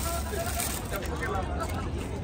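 Soft, indistinct voices over a low steady rumble.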